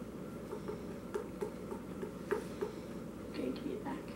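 A small plastic ball mold being tapped to settle the filling packed inside it: a run of light, irregular clicks, about two or three a second.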